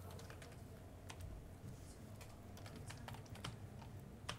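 Faint, irregular clicking of several computer keyboards and mice as people type and click at their workstations.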